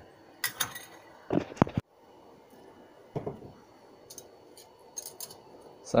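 Small steel parts such as washers, thin steel discs and a bolt clinking and tapping as they are handled and set down on a workbench. There is a cluster of clicks in the first two seconds, one with a brief metallic ring, then fainter scattered clicks.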